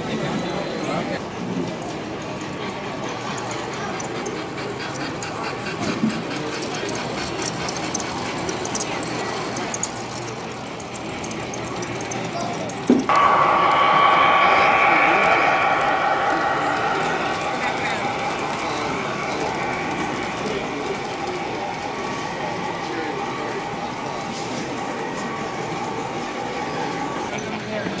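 Indistinct crowd chatter with model trains running. About halfway in, a sudden switch to a close model diesel locomotive running on its layout, with a steady motor hum of several tones that slowly fades.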